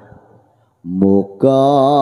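After a brief near-silent gap, a voice starts singing long, steady held notes with a slight waver, in the manner of a chanted Javanese song line.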